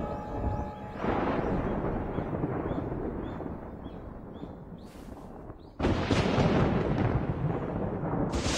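Thunderstorm sound effect: a low rumbling that slowly fades, then breaks out suddenly louder about six seconds in as thunder rolls.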